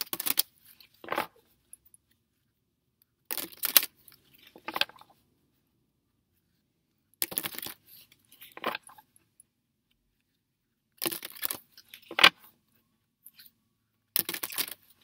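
Tarot cards being shuffled by hand: short rustling bursts, a longer one then a shorter one about a second later, repeating every three to four seconds with quiet gaps between.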